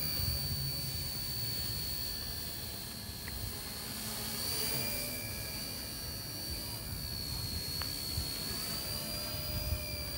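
Homemade RC helicopter in flight: its brushless-motor drive and rotors give a steady high whine that wavers slightly in pitch, over a low rumbling noise.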